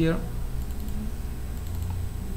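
Faint computer mouse and keyboard clicking over a steady low hum.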